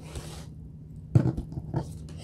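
Tarot cards being handled: a soft papery rustle at first, then a sharp tap a little over a second in and a couple of lighter clicks as cards are set down on the table.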